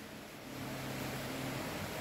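Faint background hiss with a low steady hum that sets in about half a second in and holds level until the end.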